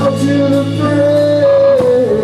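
Live rock band: a male lead singer holds one long high note that steps down to a lower pitch near the end, over electric guitar and drums with cymbal hits.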